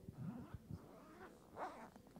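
Faint voices murmuring and humming in prayer, in short sliding rises and falls of pitch, with a brief louder vocal sound about three-quarters of the way through.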